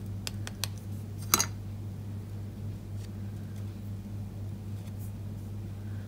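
A few light clicks and taps of a card strip and plastic spoon against a plastic tub while excess embossing powder is shaken off, the sharpest about a second and a half in, then only faint ticks. A steady low electrical hum runs underneath.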